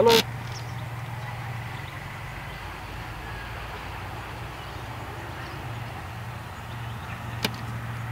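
A steady low hum of outdoor background noise, with a brief loud burst at the very start and a single sharp click near the end.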